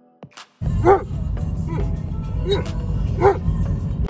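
A dog barking several short times in a moving car, over a steady low rumble of wind and road noise that sets in about half a second in.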